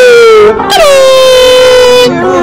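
Loud horn-like tone in two long held notes, each sliding slowly down in pitch, with a short break about half a second in.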